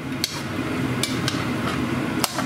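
Pork belly cubes frying in grease in a cast-iron pot, a steady sizzle, while a metal spoon stirring them knocks against the pot a few times.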